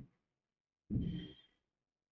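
A person sighing: one short breath out, about half a second long, about a second in.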